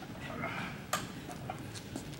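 A sharp click about halfway through, then a few faint ticks, from the parts of a vacuum seed meter being handled.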